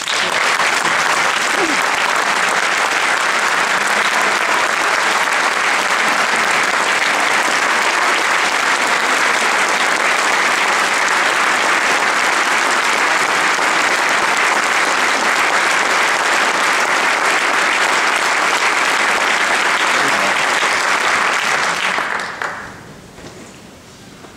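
Audience applauding steadily and loudly, dying away a second or two before the end.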